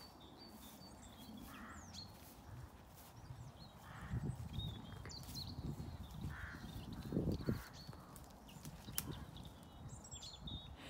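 Wild birds calling: thin chirps and whistles, with several short, harsh calls. Low rustling thumps come in the middle and are the loudest sound.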